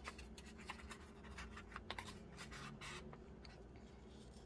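Paper rustling and scraping as a coloring book's page is turned by hand and smoothed flat: a run of faint, crisp scratches, loudest about two to three seconds in.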